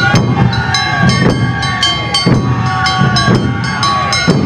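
Awa Odori festival band music: a small hand gong (kane) struck in a steady quick beat over drums, with a bamboo flute holding long notes.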